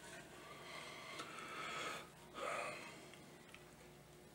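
Gentle, steady blowing through a jeweller's mouth blowpipe to push a lamp flame onto a solder joint: a soft breathy hiss. About two seconds in it breaks for a quick, louder breath, then goes on more faintly.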